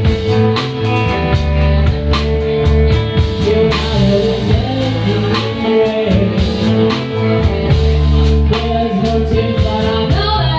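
Live blues band playing: a woman singing over electric guitars and drums, with a steady beat.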